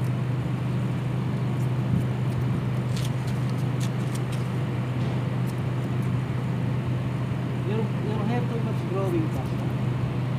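A steady low machine hum throughout, with faint snips of hair-cutting scissors. A brief distant voice comes near the end.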